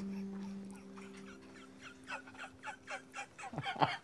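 A woman's laughter, starting about halfway through as quick, breathy pulses, four or five a second, that grow louder toward the end. A steady low tone sounds underneath during the first half.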